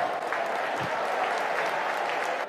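Football stadium crowd applauding and cheering steadily: a dense wash of clapping and voices.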